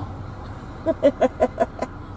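Steady low hum of a car's interior, with a short run of quiet, evenly spaced laughter in the middle.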